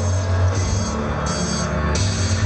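Live concert music played over a venue PA: an instrumental passage without vocals, with a loud, steady bass line and a repeating beat.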